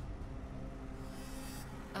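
Steady low hum and rumble inside a car, under a faint sustained music drone.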